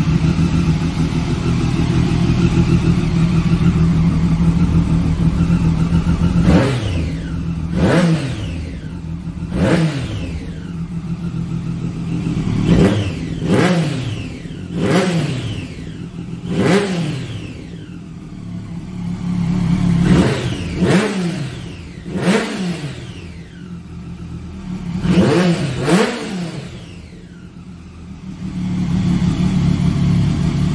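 Triumph Daytona 675's 675 cc inline three-cylinder engine, breathing through an Arrow aftermarket silencer, idling steadily and then revved with about a dozen sharp throttle blips, each quickly rising and dropping back. It settles back to idle near the end.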